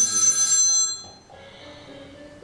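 A phone ringing: a loud, steady, high electronic ring that cuts off about a second in, followed by quiet music with a few low notes.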